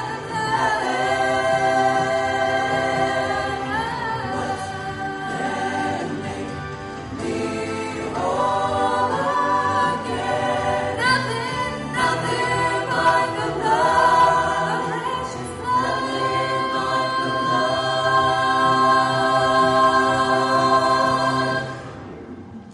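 Mixed vocal ensemble of men and women singing a gospel worship song in harmony into microphones, ending on a long held chord that cuts off at the very end.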